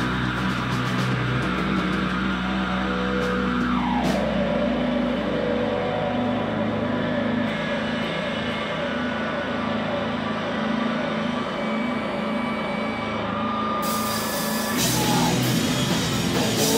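Live rock band of electric guitar, electric bass and drum kit playing loud, with a note sliding down in pitch about four seconds in. The cymbals and drums grow fuller again near the end.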